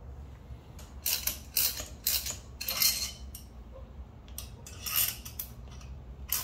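Several short bursts of metal clinking and rattling as hand tools are fitted and worked on a coil-spring compressor clamped to a motorcycle rear shock absorber.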